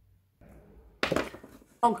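A sharp knock about a second in, followed by a short rattle, as a lipstick is capped and put down after touching up the lips.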